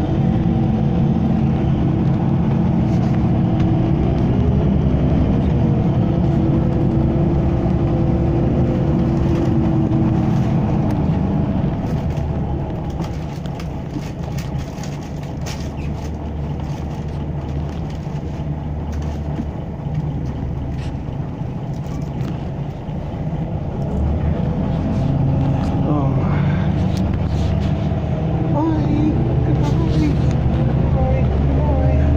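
Bus engine and road noise heard from inside the passenger cabin. The engine note climbs as the bus accelerates, turns quieter through the middle, then climbs again near the end as it picks up speed once more.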